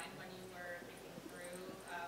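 Faint, distant speech of an audience member asking a question off-microphone in a large room, too quiet to make out the words.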